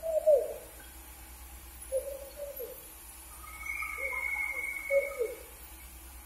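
A dove cooing: four short, low coo phrases, a couple of seconds apart. A thin, steady high whistle sounds for about a second in the middle.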